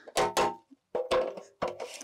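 Malco hand end-cap crimpers squeezing a gutter end cap onto a 5-inch K-style gutter: about four sharp metallic crimping clicks, two close together near the start and two more in the second half, the later ones with a brief ring from the metal.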